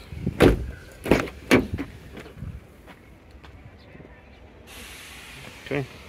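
Car doors of a 2009 Nissan Cube being handled: a heavy thud about half a second in, then two more knocks within the next second. A steady hiss follows from about five seconds on.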